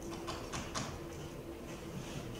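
Three short, faint taps about a quarter second apart in the first second, over a steady low room hum.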